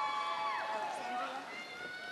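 A few voices in the audience cheering for a graduate with long, held "woo" calls at different pitches, which slide downward and trail off about a second in, followed by a couple of shorter calls.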